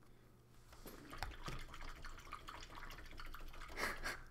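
A run of small clicks and taps from painting tools and a plastic miniature being handled on the desk, starting about a second in, with a louder rustle near the end.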